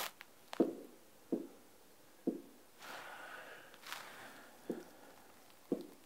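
Soft fingertip taps on a large touchscreen, about six spaced over a few seconds, with a faint rustle in the middle.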